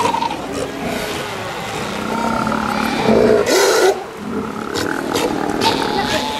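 A colony of South American sea lions calling, bulls roaring over the rest of the herd, loudest in a harsh burst a little past halfway.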